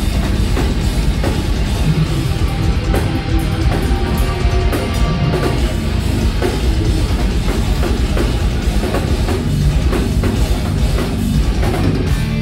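Heavy metal band playing live at full volume: distorted electric guitars, bass and a pounding drum kit in a steady, driving rhythm.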